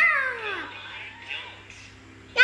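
A young child's high vocal call, loud at first and falling steeply in pitch over about half a second, cat-like; a shorter, fainter call follows later.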